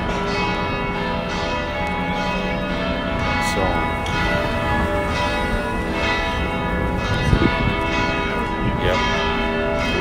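Church bells ringing a continuous peal, many sustained tones overlapping. A brief thump about seven seconds in.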